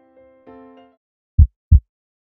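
Soft keyboard notes fade out in the first second. Then a heartbeat sound effect: a single lub-dub, two deep thumps about a third of a second apart.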